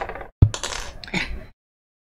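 Small metal scissors set down on a tabletop with a single sharp clink about half a second in, among brief handling sounds. The sound cuts off abruptly about a second and a half in.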